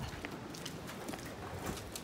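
Quiet background of a low wind rumble, with faint scattered rustles and taps as ponies move about on straw bedding.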